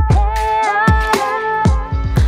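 Electronic background music with a steady drum beat, about two hits a second, under a held melody line.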